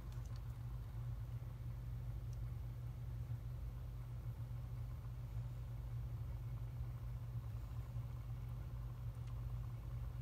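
Cup turner's small electric motor running steadily, a low even hum.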